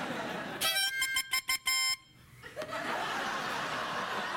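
Harmonica blown in a quick run of short, honking chord blasts lasting about a second and a half, then cutting off sharply; it sounds like one of them little clown cars. Audience laughter comes before the blasts and swells again after them.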